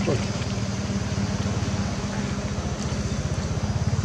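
A steady, low engine hum with a fast, even pulse, like a motor vehicle running.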